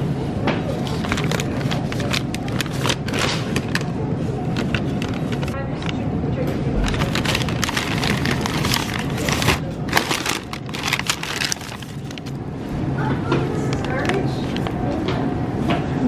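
Rustling and crackling close to the microphone, many short clicks in a row, over voices in the background and a steady low hum.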